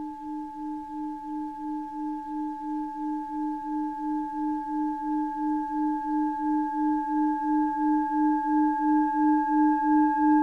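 Singing bowl ringing with a sustained low tone that wavers in a slow pulse, about three times a second, over fainter higher overtones. The ring swells steadily louder, and a further high overtone comes in near the end.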